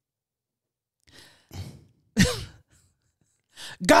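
A person breathes out twice softly, then gives one loud sigh whose voice falls in pitch, about two seconds in.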